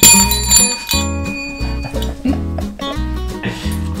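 Chrome desk bell (service bell) struck once, ringing out and fading over about a second and a half, over background music with a steady beat.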